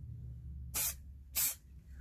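Aerosol spray-paint can giving two short hisses a little over half a second apart, marking the tie rod's threads so the new rod can be set to the same length.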